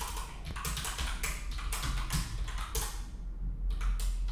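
Rapid typing on a computer keyboard, a quick run of keystrokes with a short pause a little after three seconds in.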